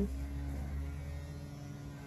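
A cat purring loudly right at the microphone, a steady low rumble that weakens about a second and a half in.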